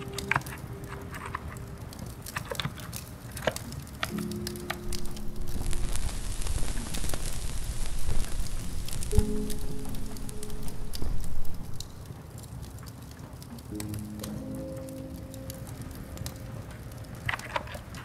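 Soft background music in slow, held notes over a steady bed of rain and fireplace crackle, with scattered sharp crackles. A louder rush of rain-like noise swells for several seconds in the middle.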